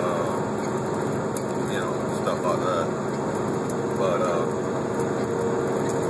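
Steady engine and road noise inside the cab of a moving semi truck, with a couple of brief snatches of a man's voice about two and four seconds in.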